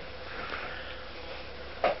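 A person drawing a soft breath in through the nose in a pause between words, over a faint steady hum; a word of speech begins right at the end.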